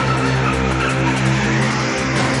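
Car tyres squealing in a sustained skid as an SUV drifts, over background music.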